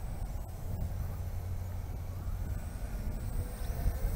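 Wind buffeting the microphone in a steady low rumble, with a faint whine from the small quadcopter's motors and propellers that rises slightly near the end.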